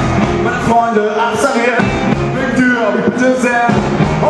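Rock 'n' roll band playing live: a male singer over electric guitar, upright double bass, saxophone and drums.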